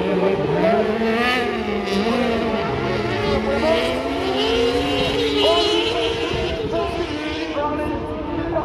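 Several kart cross racing engines running at once, each revving up and down on its own as the karts race on the dirt track.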